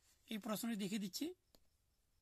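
A person speaking for about a second, then a pause with a faint click.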